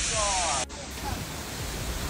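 Storm noise of strong wind and heavy rain as a steady rushing hiss, which cuts off abruptly about two-thirds of a second in and gives way to a quieter, duller rush of wind and rain.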